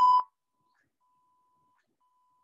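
Morse code software sounding steady beeps of about 1 kHz: one loud short beep at the start, then fainter long tones, dashes, about a second in and again at the very end.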